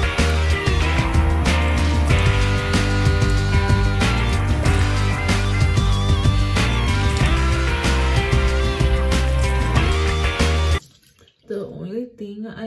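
Background music with a strong bass line, which cuts off abruptly about a second before the end.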